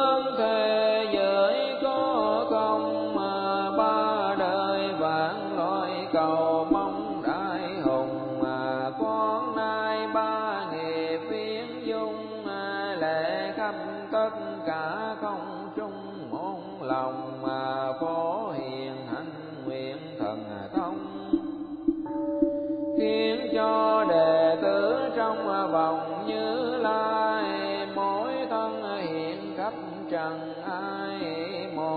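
Vietnamese Buddhist repentance chant sung by a monk in a slow, drawn-out melody, the voice gliding up and down on long held syllables over a steady sustained tone. The voice drops away briefly about two-thirds of the way through, then carries on.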